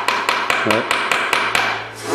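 Rapid, evenly spaced taps on the metal casing of a countertop draught-beer tap unit, about six a second, stopping shortly before the end.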